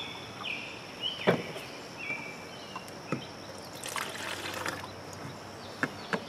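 Liquid poured from a plastic jug into a glass measuring cup, trickling with a thin ringing tone as the cup fills for about three seconds, with a small click partway through.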